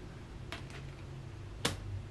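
Tarot cards being handled: two light clicks about half a second in, then a single sharper snap near the end, over a low steady hum.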